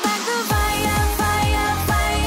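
Electronic music. A heavy bass beat comes in about half a second in and repeats about three times a second under a sustained melody.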